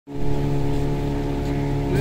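A boat's engine running steadily at an even speed, with an unchanging pitch.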